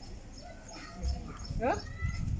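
People talking, with a short rising questioning exclamation near the end and a low bump about a second in.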